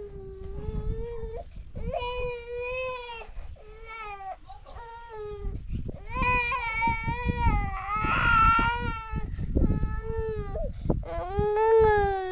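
A small child crying in a string of long drawn-out wails, the loudest and most strained one about eight seconds in.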